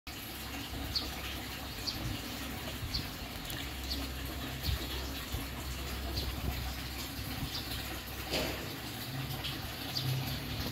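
Garden ambience: a small bird chirps briefly about once a second over a steady low rumble, with a short rustle a little after eight seconds.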